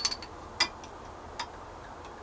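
A few light clinks of glass and metal as the neck of an Irish cream bottle and a twisted steel bar spoon touch the rim of a shot glass, the clearest about half a second in and another near a second and a half.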